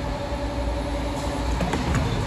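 GJ40R wire rotary CNC spring forming machine running as it coils carbon steel wire into an extension spring: a steady machine hum with a thin whine that stops about a second and a half in, then a click near the end.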